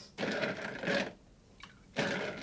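Liquor pouring from a bottle into a glass, one pour lasting about a second, followed by a short pause.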